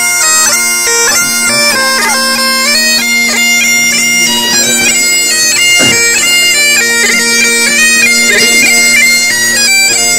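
Great Highland bagpipe playing a tune: a steady drone held underneath while the melody notes step up and down above it.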